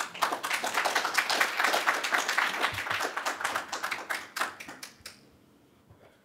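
Audience applauding the end of a talk: dense clapping that starts at once and dies away about five seconds in.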